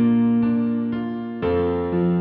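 Solo piano playing a karaoke accompaniment with no vocals: held chords ring and fade, lighter notes change under them, and a fresh chord is struck about one and a half seconds in.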